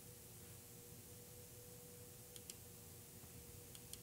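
Near silence: room tone with a faint steady hum, and a few faint clicks about two and a half seconds in and again near the end.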